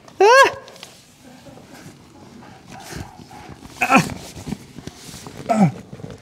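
A man's short high-pitched wordless yelps and exclamations: one loud rising-and-falling cry just after the start, then two shorter falling calls later, with faint rustling and light knocks in between as he gets into an inflatable plastic patient carrier.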